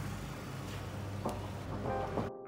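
Steady outdoor background noise with a low, even hum. Faint music starts to come in during the second half.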